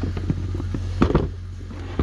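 Plastic clicks and knocks from handling a Polaris ATV's seat as it is unlatched and lifted, the loudest knock about a second in. A steady low hum runs under it.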